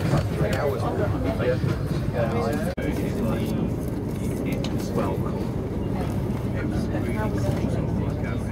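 Steady low rumble of a moving passenger train heard from inside the carriage, with people talking over it during the first few seconds. The sound cuts out for an instant a little under three seconds in.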